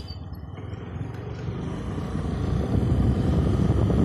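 A two-wheeler's engine with road and wind noise while riding, a low rumble that grows steadily louder.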